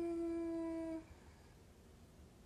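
A single steady pitched tone, held level for about a second and then stopping.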